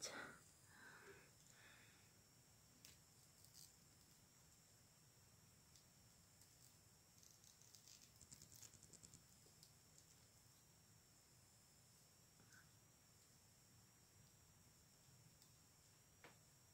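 Near silence: room tone with a faint steady high whine and a few faint clicks of small plastic toy parts being handled, including a quick run of ticks around the middle.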